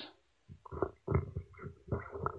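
A person's faint, low mumbling: several short murmurs and hums, each well under half a second, much quieter than the talk around them.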